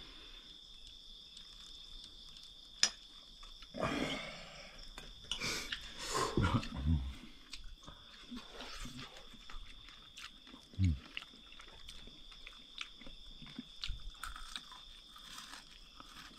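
Sounds of a meal: chewing, and a spoon clicking on plates now and then, with louder rustling and knocking from about four to seven seconds in. Under it runs a steady high-pitched drone of night insects.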